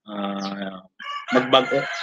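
A rooster crowing nearby: one long, drawn-out crow in several parts, mixed with a man's voice.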